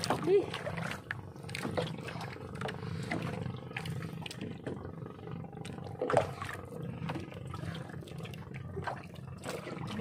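Knocks against the hull of a small outrigger fishing boat as a young thresher shark is handled over the side for release. The loudest knocks come just after the start and about six seconds in, over a steady low drone.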